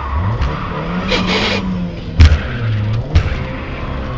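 Rally car engine, heard from inside the cabin, revving up about half a second in, holding, then easing off, with tyres scrabbling over loose gravel. Two sharp knocks about two and three seconds in; the first is the loudest sound.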